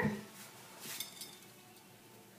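Glass sugar jar being handled on a kitchen counter, giving two light clinks, one about half a second in and a brighter ringing one about a second in.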